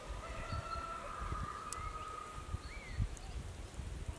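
Domestic chicken calling: one long drawn-out call lasting about three seconds, with a few short bird chirps over it and some low bumps.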